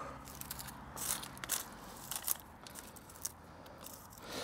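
Dry dead bean stems crackling and snapping as they are pulled off a frame of hazel bean poles: irregular crackles with a handful of sharper snaps.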